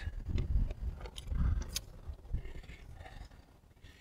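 Keys jangling on their ring as a key is turned in the lock of an RV compartment door. There are several sharp clicks of the lock and latch in the first two seconds, followed by quieter handling as the door is swung open.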